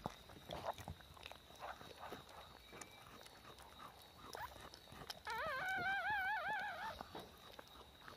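A dog's high whine about five seconds in, lasting under two seconds and wavering up and down in pitch, over faint scattered clicks and rustles.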